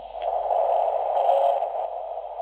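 Receiver hiss from a Chinese uSDX/uSDR QRP SDR transceiver's small built-in speaker: a narrow band of noise that grows louder as the volume is turned up, then eases a little near the end. The owner calls the radio's audio horrible.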